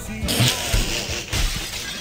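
A crash of shattering glass, breaking suddenly about a quarter second in and trailing off over about a second, most likely a radio sound effect, with music running underneath.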